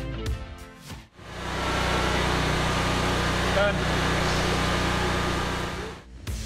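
Background music with a beat for about a second, then, after a sudden cut, a steady low mechanical hum with hiss that holds an even level.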